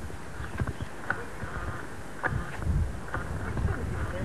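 Footsteps on paving: irregular light knocks and scuffs, over bursts of low rumble on the microphone.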